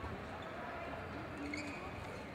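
Badminton court sounds in an echoing sports hall: a sharp racket hit on the shuttlecock at the start, then faint shoe squeaks on the court floor over a murmur of voices.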